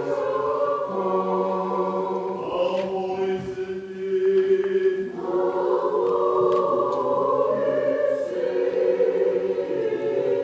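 Church choir of men and women singing an Orthodox Christmas hymn a cappella in long held chords. The sound thins to fewer voices about three and a half seconds in, and the full choir comes back in about five seconds in.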